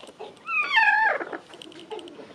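A broody hen sitting on her eggs gives one drawn-out, wavering call that falls in pitch, a sign she is unsettled at being disturbed on the nest.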